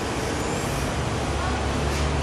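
Road traffic from the street below: a steady low vehicle-engine hum under a broad hiss of passing traffic, growing a little stronger about half a second in.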